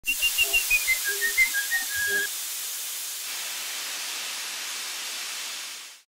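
Logo-sting sound effects: a short run of high whistle-like notes stepping downward over quick ticks, then a steady hiss of escaping steam that cuts off at the end.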